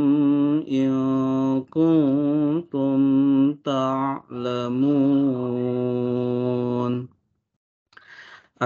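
A man's voice in melodic chanted recitation, in the style of Qur'anic tilawah: several sung phrases with long held notes, the last held for about three seconds before stopping about seven seconds in.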